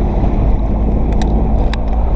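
Outboard motor of a small aluminium boat running steadily under a heavy low rumble of wind and water, with a couple of light clicks a little after a second in.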